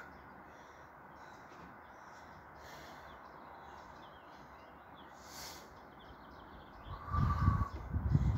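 Faint outdoor ambience with faint bird chirps. About seven seconds in, a loud low rumble begins, with a brief steady tone over it.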